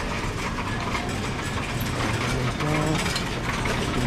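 Wire shopping cart rolling over a smooth store floor, its wheels and basket giving a steady rattling rumble.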